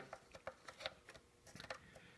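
Faint scattered clicks and small knocks of banana-plug test leads being handled at a panel jack.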